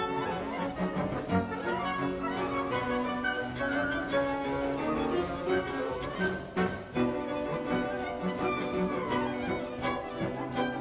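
Background music: an orchestral score led by bowed strings, with violins and lower strings playing a moving tune.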